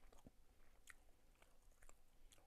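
Faint chewing of a soft durian cream cake, with a few quiet mouth clicks.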